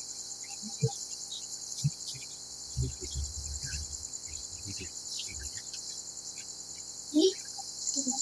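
Children's bare feet and bodies knocking on a plastic play-gym and slide: a few dull thumps, the sharpest about one and two seconds in, low bumping in the middle, and a brief sharper sound near the end. Under them runs a steady, high, fast-pulsing chirr.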